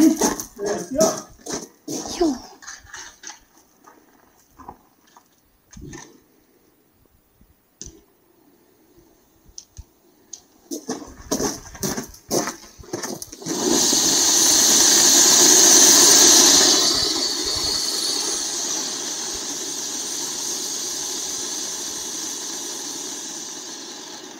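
Vulcan Fire Sphinx Volcano ground-fountain firework lit and burning, starting about halfway through with a loud, steady hiss of spraying sparks that slowly fades toward the end. A few short clicks and knocks come just before it catches.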